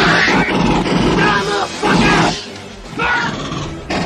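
Several loud, wordless voice-like cries about a second apart, with music underneath.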